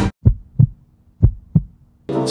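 Heartbeat sound effect: two low double thumps (lub-dub), about a second apart.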